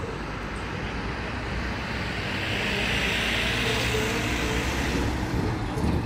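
Road traffic noise, with a vehicle passing that swells to a peak in the middle and fades again.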